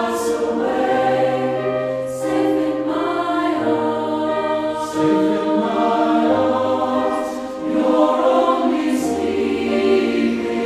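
Mixed choir of men's and women's voices singing a slow song in long, held chords, with the low voices changing note every second or two.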